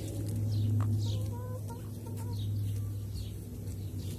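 Hens clucking softly, with short pitched calls and high chirps, over a steady low hum.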